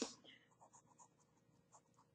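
Near silence: faint, irregular light ticks and scratches, a few a second.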